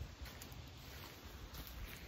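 Faint low rumble and handling noise from a handheld camera microphone being carried outdoors, with no distinct event.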